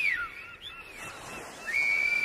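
Someone whistling a short tune: a long held high note, a quick run of short falling notes, then another long held note that rises at its end.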